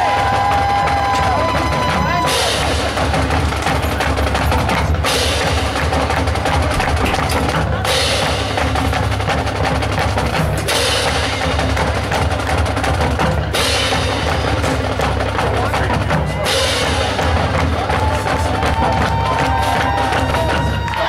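High school marching band percussion playing a drum feature, with short breaks about every three seconds. Held notes sound near the start and again near the end.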